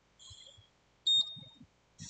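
A short high-pitched chirp, then about a second in a louder, steady high-pitched beep lasting about half a second.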